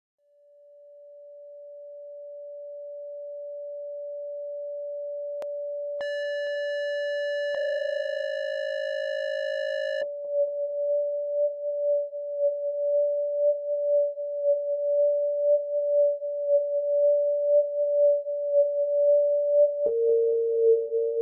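Opening of an electronic music track: a single pure synthesizer tone fades in slowly. About six seconds in, a brighter higher tone joins it, then a cluster of close low tones, and both cut off together about ten seconds in. The one tone carries on, wavering in level.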